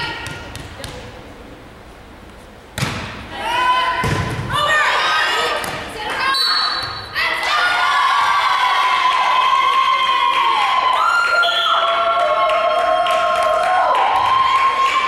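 A volleyball is struck hard twice, about three and four seconds in, with a sharp thud each time, among players' shouts in a large gym. From about halfway through come long, held shouts and cheering from players and spectators.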